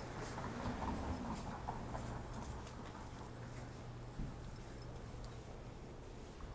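Street ambience: a steady low traffic hum, swelling briefly near the start as a vehicle passes, with light scattered clicks of footsteps on the sidewalk.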